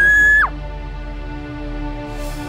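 A high-pitched scream that rises, holds for about half a second and drops off, over background music that carries on with steady sustained notes.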